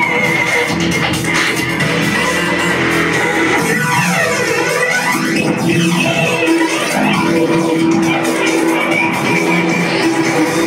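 Breakbeat DJ set played loud: sustained melodic tones with a sweeping filter effect in the middle, where the deep bass drops out for a few seconds before returning.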